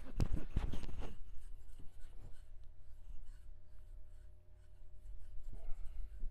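Hands massaging and stretching a person's arm and hand: scratchy rubbing of palms over skin and shirt sleeve, with a cluster of sharp clicks in the first second and another shortly before the end, over a steady low hum.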